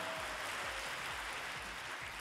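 Steady audience applause.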